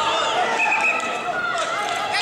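Crowd chatter: many spectators' voices talking and calling out at once, steady and overlapping, with no single clear voice.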